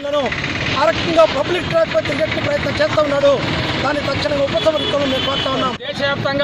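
A man speaking in Telugu, with traffic noise behind. The speech breaks off briefly near the end.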